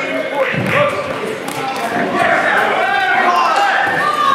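Boxing gloves landing punches with dull slaps and thuds, under voices shouting in a large hall.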